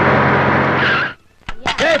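An old van's engine running as it drives on a dirt road and brakes, with tyre skid noise. The sound cuts off sharply a little over a second in.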